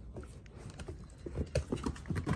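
Puppies' paws and claws tapping and scuffling on wooden deck boards, the taps getting louder and busier in the second half.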